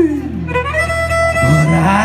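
Live band music: a violin plays a melody that slides between notes, over electric bass and guitar.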